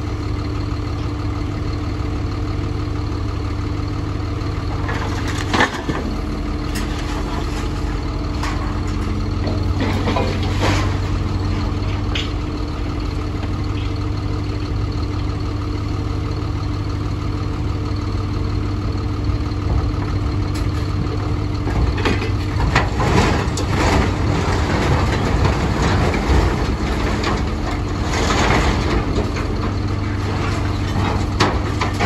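A tractor's diesel engine idling steadily close by, with scrap metal clanking and crashing as a grab digs into and lifts it out of a steel trailer: a few knocks early on, then a busier run of clatter in the last third.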